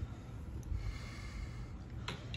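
Faint breathing close to the microphone over a low, steady rumble.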